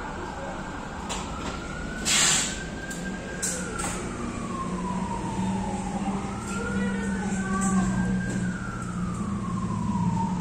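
A siren wailing, its pitch rising and falling slowly twice, over a low steady hum that grows louder. A short, loud rushing noise comes about two seconds in, followed by a few sharp clicks.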